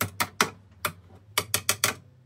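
Screwdriver working at the screws of a plastic PLC power-supply casing: a run of about eight sharp, irregular clicks.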